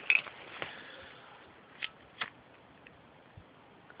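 Plastic butane lighters clicking against each other as one is picked out of a pile, then two short scrapes of a Bic-style lighter's flint wheel under the thumb, less than half a second apart, as it is struck in sub-zero cold.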